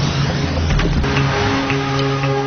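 A loud, noisy sound effect with a low rumble, with background music coming in about a second in as held, steady notes and a few short clicks.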